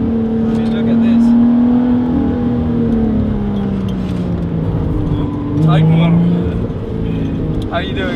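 Lotus Exige engine heard from inside the cabin while driving, its note holding steady and then easing down. About five and a half seconds in the note steps up in pitch and gets louder.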